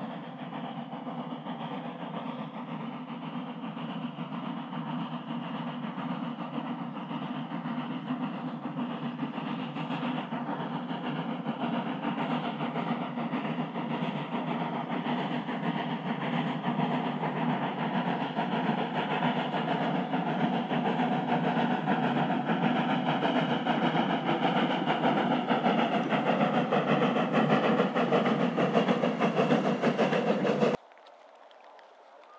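Steam motor coach running along the track toward the listener, the sound of its engine and running gear on the rails growing steadily louder as it draws near.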